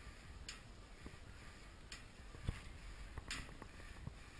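Faint clicks from a cable row machine, roughly one every second and a half in time with the single-arm pulls, with a single low thump about halfway through.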